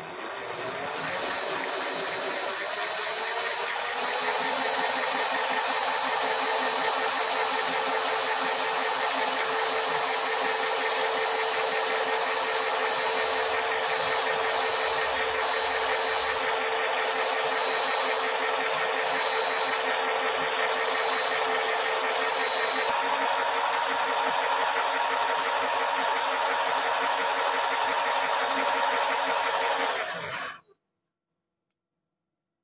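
Homemade motor-driven coil winder spinning up over the first few seconds, then running at a steady whirr as it winds copper magnet wire onto a pinball coil bobbin. The tone shifts slightly about three quarters of the way through.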